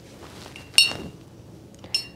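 Two light clinks, each with a brief high ring: a paintbrush tapped against a glass water cup, about a second apart.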